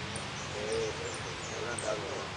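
Faint, thin, high chirps from a caged saffron finch (jilguero), heard over a steady background murmur of people talking.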